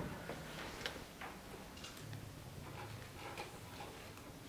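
Faint handling noise on a handheld microphone: a few soft, irregular ticks over a low room hum.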